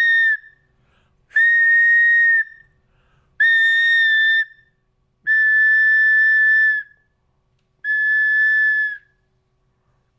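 A 3D-printed plastic whistle blown in short, steady, high-pitched blasts: the end of one blast, then four more of about a second each with short gaps between, the fourth one longer than the rest.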